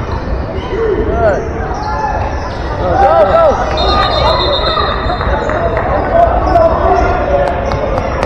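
Basketball game in a large gym: sneakers squeak on the hardwood floor in short chirps, about a second in and again around three seconds in, over the ball bouncing and the voices of players and spectators echoing in the hall.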